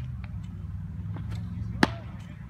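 A thrown baseball pops sharply into a catcher's leather mitt near the end, one crisp snap over a steady low rumble.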